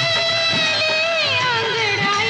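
Old Hindi film song playing: the melody holds one long steady note, then slides down about halfway through, over a light rhythmic accompaniment.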